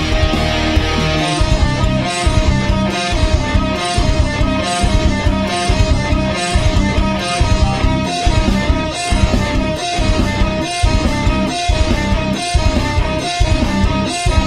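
Instrumental passage of a rock song, led by electric guitar playing a repeating figure, with a pulsing low end that comes in about a second in.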